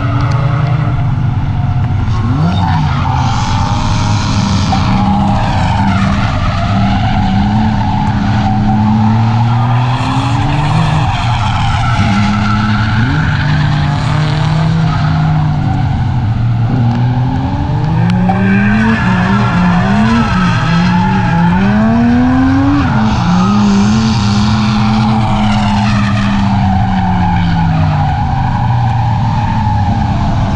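Drift car's engine revving up and down while the car slides sideways through the corners, its tyres squealing and skidding. The revs swing up and down several times in quick succession a little past the middle.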